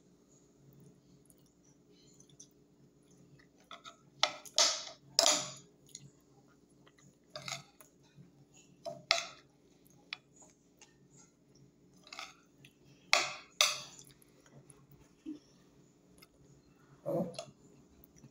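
A person eating fish by hand: short, sudden mouth noises of chewing and smacking come in scattered bursts, clustered around four to six seconds in and again around thirteen, over a steady low hum.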